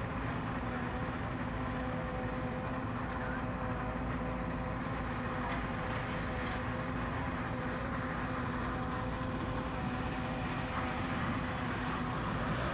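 Car engine idling and rumbling along at low speed, a steady unchanging drone.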